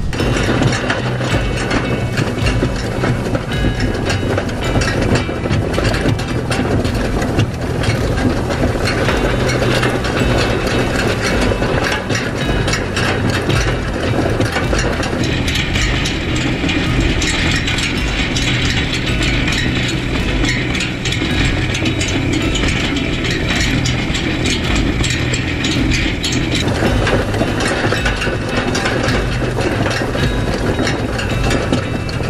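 Four-bar hay rake clattering and rattling steadily as it is pulled through the hay, over the steady hum of the tractor engine. For about ten seconds in the middle the sound turns brighter and hissier.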